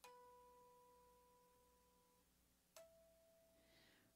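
Two faint, clear, bell-like guitar notes, each plucked and left to ring out: one at the start fading away over about two seconds, and a second, slightly higher note near the end.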